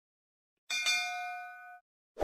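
A bell-like notification ding sound effect, struck twice in quick succession about two-thirds of a second in. It rings on for about a second and then cuts off suddenly, marking the notification bell being switched on.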